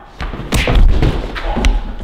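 A flurry of heavy thuds and scuffling from a staged fistfight, with a sharp knock just before the end.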